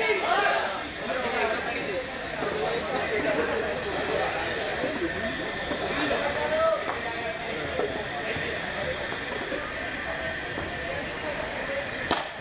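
Several people talking and calling out indistinctly, over a steady hiss.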